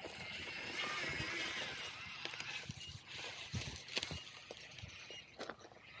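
Faint outdoor background noise, a steady hiss, with a few light clicks and knocks in the second half.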